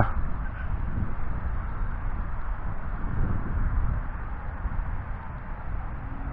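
Gusty wind rushing across an outdoor microphone: an even, wavering noise with no clear pitch, heaviest in the low end.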